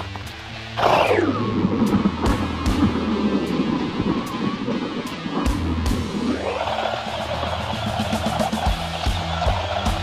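Rock music with bass and drums. Over it, a small RC car's electric motor whines: the pitch drops sharply about a second in, climbs again a little past six seconds, then holds steady at speed.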